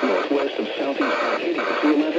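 Weather radio broadcasting the automated voice of a severe thunderstorm warning through its small speaker.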